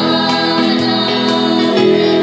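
A choir singing a Tongan hymn (polotu) in harmony, holding sustained chords.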